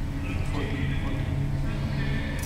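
Harmonium and tabla playing devotional kirtan music: the harmonium holds its reedy chords under the tabla's hand strokes, with a singing voice.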